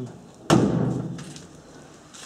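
A single sudden thump about half a second in, dying away over about a second.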